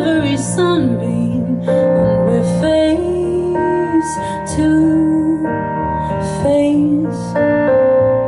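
Live music: a woman singing a slow melody over piano chords.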